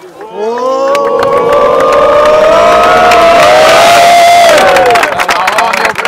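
A group of men's voices cheering together in one long, loud shout that rises in pitch over the first second, holds for about four seconds and falls away, followed by clapping.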